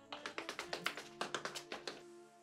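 A rapid, uneven run of sharp taps, about nine a second, over soft background music with sustained notes.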